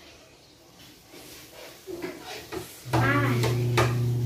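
Faint scrapes of a plastic rice paddle against a plate of cooked rice, then a person's voice starting about three seconds in.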